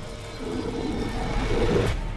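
Dramatic documentary soundtrack swell: a low, noisy underwater-style rumble that builds from about half a second in and cuts off near the end.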